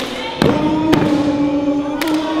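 Men's voices chanting a long held note, with sharp percussive hits of a step routine. There are three hits in the first second, then the chant is held on.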